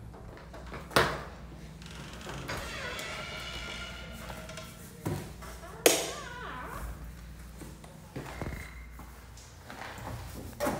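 A few sharp thuds and knocks, the loudest about a second in and just before six seconds in, with quieter knocks and handling noise between them.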